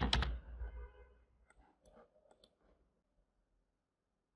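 Computer keyboard keystrokes in a quick run, dying away about a second in, followed by a few faint clicks, then near silence.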